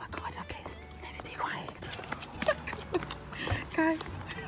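Low, indistinct talking with footsteps on a pavement, and a short, louder voiced sound just before the end.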